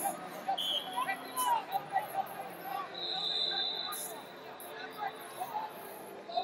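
Hubbub of many voices in a large sports arena, with a referee's whistle blown once for about a second, about three seconds in, as wrestling restarts.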